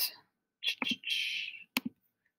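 A few computer mouse clicks as drawing tools are selected in a toolbar, with a brief soft breathy hiss between them.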